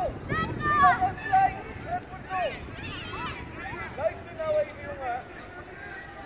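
Children's high-pitched voices shouting and calling out across a football pitch, in short bursts one after another, over low wind rumble on the microphone.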